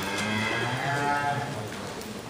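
A Simmental heifer mooing once, a low call lasting about a second and a half.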